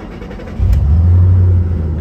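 2008 Ford Mustang Shelby GT's 4.6-litre V8 starting: it catches about half a second in with a loud, deep flare of revs, then drops back to a steadier idle near the end.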